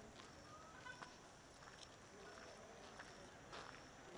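Near silence: faint outdoor ambience with a few soft, scattered clicks and faint distant voices.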